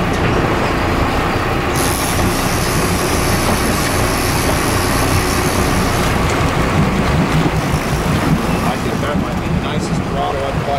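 A boat's engine running steadily under wind and water noise, with an added high hiss for a few seconds in the middle.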